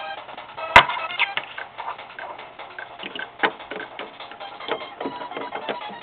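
Hands handling small plastic Lego pieces and the camera: one sharp click about a second in, then a scatter of lighter clicks and knocks, over faint background music.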